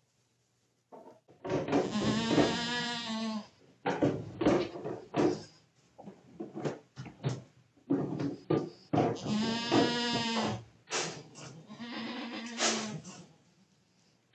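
Adult goat bleating: three long, loud calls, the first about a second and a half in, the next two near the end, with short knocks and rustling in between.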